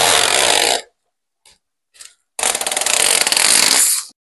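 Protective film being peeled off a clear plastic sheet, in two long, loud pulls: the first ends about a second in, the second starts a little after halfway and runs almost to the end.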